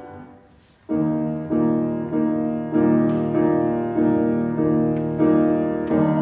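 A held sung note dies away in the first second. After a brief pause, a piano comes in about a second in, playing a run of steady, evenly repeated chords, about two a second, as an interlude in the song's accompaniment.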